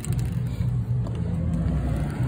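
Low, steady rumble of a car engine.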